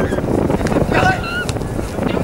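Wind buffeting the microphone in a steady low rumble, with distant shouted calls from players on the pitch.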